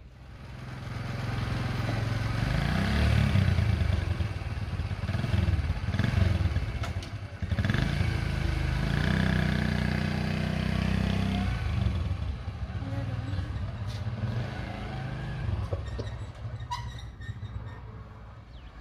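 A small motorcycle engine running and revving as the bike pulls away, rising and falling in pitch. It grows fainter over the last few seconds as the bike rides off.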